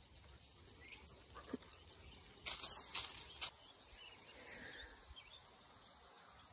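Faint outdoor background, broken by a brief, loud rustle lasting about a second, a little past the middle.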